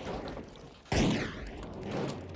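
A loud gunshot about a second in, ringing out and dying away.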